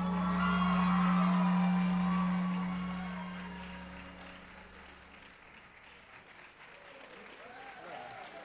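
A choir's final chord with instrumental accompaniment, held and fading out over about five seconds, with audience applause.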